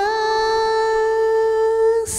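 A woman singing one long held note, steady in pitch, with no guitar sounding under it.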